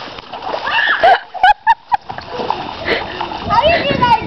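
A child's feet running and splashing through a shallow muddy rainwater puddle.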